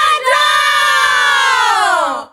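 Outro jingle of a group of voices shouting together in one long drawn-out call, with a brief break near the start, then sliding slowly down in pitch.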